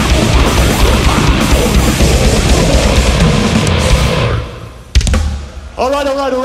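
Goregrind band playing live through a festival PA: fast heavy drumming with distorted guitar and bass, cutting off about four seconds in as the song ends. One loud hit follows about a second later, then a voice through the PA near the end.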